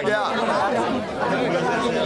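Speech: a man speaking Hindi amid the chatter of a crowd pressed close around him.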